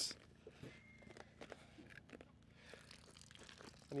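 Faint scattered clicks and small knocks of a motorhome's drain tap being worked by hand under the side skirt, with shoes shifting on gravel.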